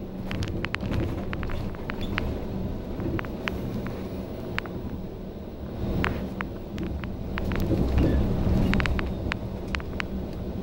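Cabin sound of a bus on the move: the MAN D2066 six-cylinder diesel running with a steady low rumble, building louder about three-quarters of the way through, over frequent sharp clicks and rattles from the bus interior.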